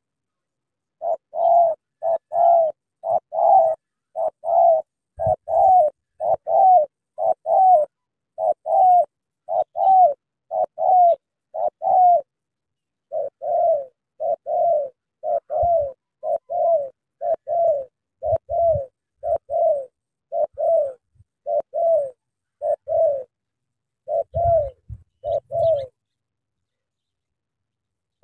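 Spotted doves cooing: a long run of short coos, each rising then falling in pitch, repeated about once a second with one short break partway through.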